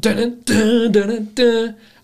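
A man singing a tune without words, unaccompanied: three short sung notes, the middle one the longest.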